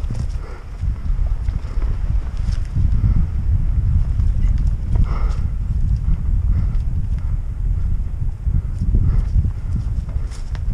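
Norco Aurum downhill mountain bike rolling fast over a dirt forest trail: a steady low rumble from the tyres and the ride, broken by scattered clicks and knocks from the chain and frame as it bounces over roots and rocks.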